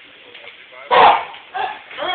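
Spectators yelling as a bobsled goes by: one loud, sharp shout about a second in, then shorter yells near the end.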